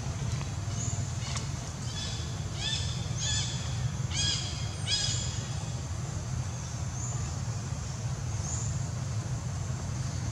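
A run of short, harsh animal calls, clustered between about two and five seconds in, over a steady low hum, with a few faint high chirps around them.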